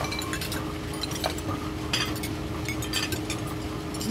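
Wooden dish-washing machine running, with a steady mechanical rumble and a low hum. Porcelain bowls clink against each other every so often as they slide along its chute.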